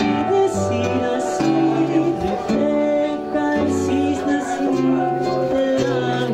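An acoustic guitar and a Casio electronic keyboard play a slow song together, with sustained notes over a bass line that moves to a new note about every half second to a second.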